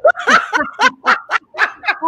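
Women laughing in a quick run of short, rapid laughs, with "oh my" spoken through it.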